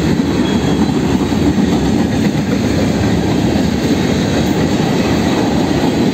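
Ballast hopper cars of a freight train rolling past: a steady, loud rumble of steel wheels on rail.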